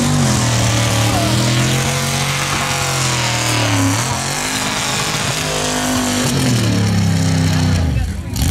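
Jeep CJ mud racer's engine running hard at high revs through the mud pit. Its pitch climbs in the first second, drops and climbs again at about four seconds and again near six, then rises toward the end.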